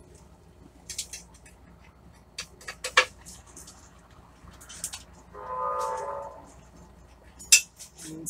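Scattered small clicks and clinks of a grow tent's inline fan mounting hardware being handled and unfastened, with sharper knocks about three seconds in and again near the end. A short steady tone sounds briefly a little after five seconds in.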